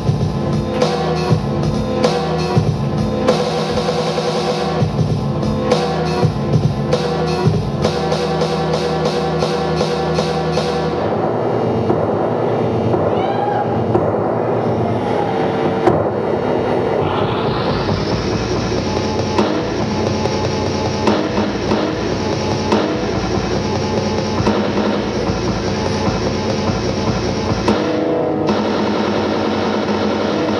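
DJ battle routine mixed live on turntables: a drum-heavy beat for about the first ten seconds, then the treble cuts out and sweeps gradually back in about six seconds later, with another shift in the mix near the end.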